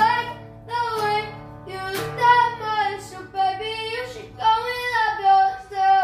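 A boy singing long, held notes over strummed acoustic guitar chords; the singing stops right at the end.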